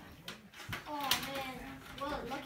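A child's voice sounding for about a second in the second half, with a few short knocks of toys being handled just before it.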